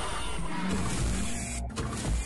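Channel intro jingle: music with a dense, buzzing electronic sound effect over heavy bass, which drops out briefly near the end.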